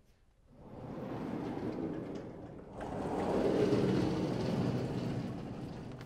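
Vertically sliding chalkboard panels being pushed along their tracks, the upper and lower boards trading places. It is a long rolling noise that starts about half a second in, grows louder in the second half and fades out near the end.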